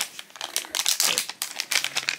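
Shiny plastic-foil blind-bag packet crinkling in a run of irregular crackles as it is squeezed and turned over in the hands.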